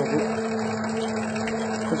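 Electric dough mixer running with a steady hum, kneading a sweet leavened dough as flakes of butter are worked in.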